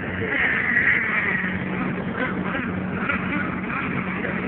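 Radio-controlled race cars running on a paved oval, their motors giving a high whine that swells in the first second or so as one car passes close, then carries on further off.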